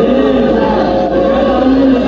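A church congregation singing a hymn together, with long held notes.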